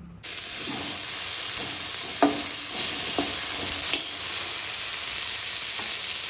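Chopped onion, tomato and paneer cubes sizzling in hot oil in a pan, stirred with a metal spatula that clicks and scrapes against the pan a few times. The sizzle starts abruptly just after the start and runs steadily.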